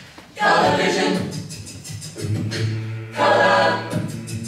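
University a cappella group singing: a solo voice over sung backing harmonies. The sound swells loudly about half a second in and again near the end, and a held low bass note sits under the second half.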